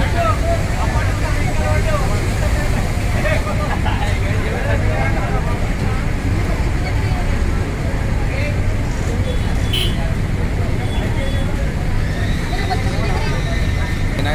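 A heavy vehicle's engine running steadily, with a crowd talking all around.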